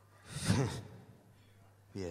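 A person's short, breathy vocal sound into a microphone about half a second in, between bits of talk.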